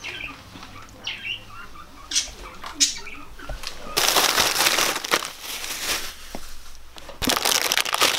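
Plastic bags and food packaging rustling and crinkling as they are handled, in two loud stretches from about halfway through and again near the end, after a few short soft sounds.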